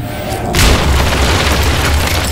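Sound-designed cinematic boom for a jet fuselage bursting out of a glowing portal: a sudden heavy hit about half a second in, then a sustained low rumble with crackling sparks, over music.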